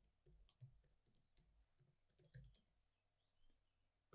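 Near silence with a few faint, scattered clicks from typing on a computer keyboard.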